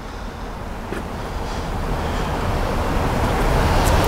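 Road noise of a vehicle approaching, growing steadily louder, with a single click about a second in.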